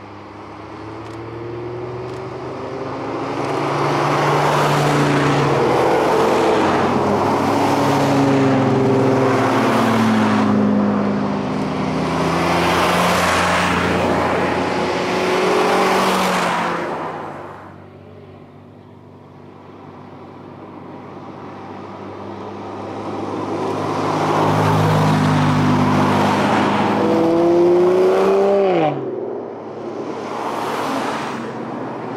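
Cars passing one after another through a bend, their engines accelerating, with engine notes that rise and fall. The sound builds to a loud stretch, dips into a quieter lull a little past halfway, then builds again as more cars approach. Near the end one engine's note drops sharply in pitch as it goes by.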